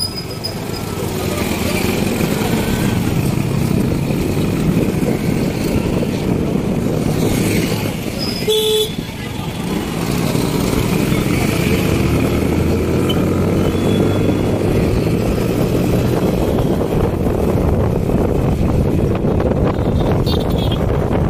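Steady engine and road noise from riding in traffic on a busy street, with a short horn toot a little before the middle.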